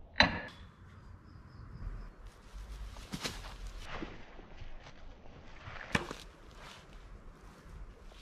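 Throwing knives thrown in turn and striking a wooden target. There is a sharp knock just after the start, the loudest, and further knocks about three, four and six seconds in, with footsteps on grass between the throws.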